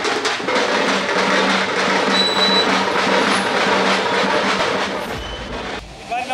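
Motorbike and scooter rally: many small engines running together with drumming, a dense, loud din that fades away near the end.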